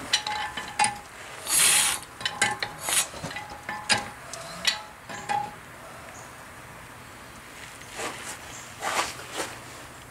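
Metal clicks and clanks with a few short squeaks as an old upright steam engine is turned over by hand toward bottom dead center to check its valve timing. The clicks come thickly in the first half, pause, and return briefly near the end.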